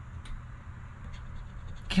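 Metal scratcher coin scraping the coating off a paper scratch-off lottery ticket, faint and continuous over a low steady rumble.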